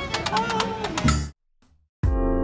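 Live acoustic street band playing, with double bass, acoustic guitars and fiddle under a singing voice; the music cuts off abruptly about a second in, leaving silence.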